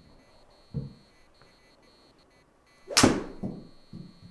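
A three hybrid striking a golf ball off a hitting mat with one sharp, loud crack about three seconds in, trailing off over half a second, followed by a smaller knock just before the end. A faint dull thud comes about a second in.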